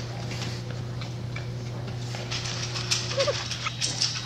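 A litter of young puppies shuffling, rustling and mouthing each other on blankets, with a brief high squeak a little after three seconds, over a steady low hum.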